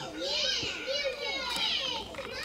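High-pitched voices of young children playing and talking in the background.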